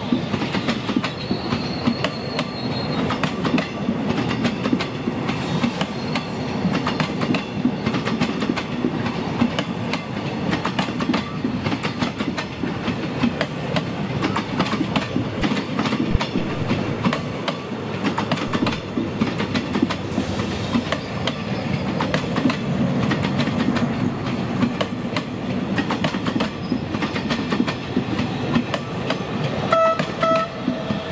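A passenger train's coaches rolling past close by, a steady rumble with continual clickety-clack of wheels over rail joints and switches.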